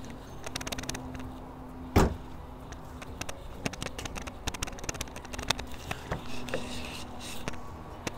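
A Dodge Charger's trunk lid shut with a single thump about two seconds in, followed by scattered light clicks and taps as the car is handled, and a rear door opened near the end.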